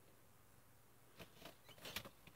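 Near silence, with a few faint clicks and rustles in the second half from a small cardboard milk carton being handled.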